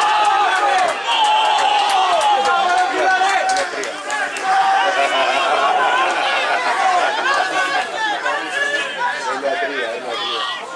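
A small group of people shouting and cheering together in celebration of a goal, many raised voices overlapping without a break.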